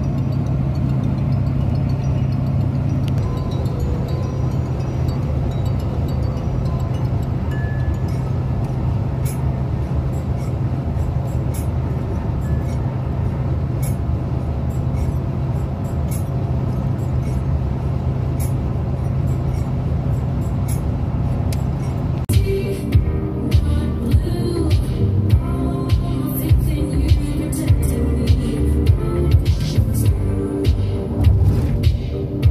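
Steady low drone of a car driving at highway speed, heard from inside the cabin, with background music over it. About two-thirds of the way through, the music changes abruptly to a track with a regular beat.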